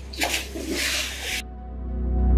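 Background music dips while about a second of pool water splashing and sloshing near the microphone comes through, then cuts off suddenly as the music swells back in.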